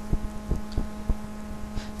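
Steady low electrical hum on a desktop microphone, with soft, irregular low thumps.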